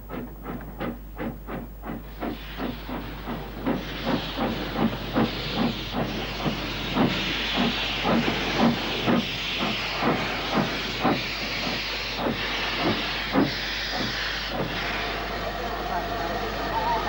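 Snowdon Mountain Railway steam rack locomotive blowing off a loud hiss of steam that builds up over the first few seconds. Regular beats come about three times a second underneath it.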